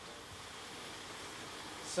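Steady background noise of a food-processing factory hall: an even hiss with no distinct machine rhythm or clear tone.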